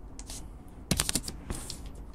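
Computer keyboard typing: a few separate keystrokes, then a quick run of several about a second in, as a short word is typed into a code editor.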